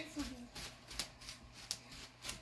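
Bubble wrap popping under bare feet: scattered sharp pops, about two a second.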